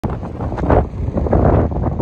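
Wind buffeting the phone's microphone in loud, uneven gusts.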